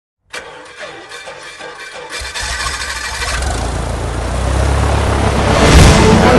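An engine cranking and starting, with a regular beat at first. About two seconds in, a low rumble comes in and grows steadily louder.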